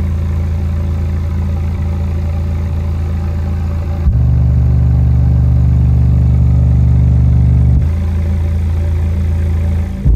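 Savard Hi-Q 6.5-inch subwoofer playing sustained low bass notes, driven at around 60 watts by a cheap class-AB subwoofer amplifier board. About four seconds in, the note steps up in pitch and gets louder, then drops back to the lower note near eight seconds.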